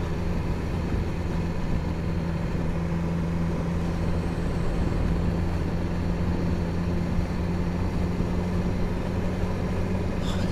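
BMW S1000XR motorcycle's inline-four engine running at a steady, low road speed, a constant hum with no revving, under road and wind noise.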